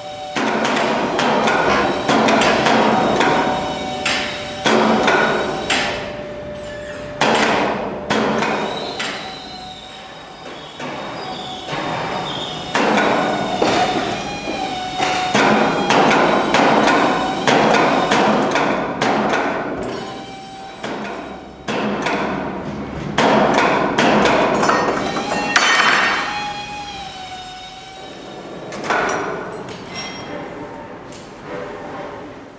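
Workshop noise of a truck cab being unbolted: an air tool running in bursts of a few seconds, with many sharp metal knocks and clanks between them.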